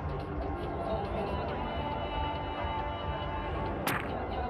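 Steady stadium crowd noise with music playing in the ground. Just before the end comes one sharp crack as the cricket ball hits the stumps and knocks the bails off.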